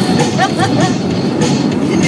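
Music playing on a car stereo inside a moving car's cabin, over steady road noise, with a few short bursts of laughter about half a second in.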